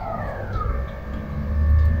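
A siren wailing in the background, its pitch falling, over a low rumble that swells near the end.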